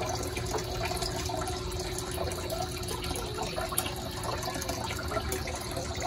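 Excess water from a drip-irrigation return pipe running steadily into a plastic bucket, splashing and trickling, with the water pump's faint steady hum underneath.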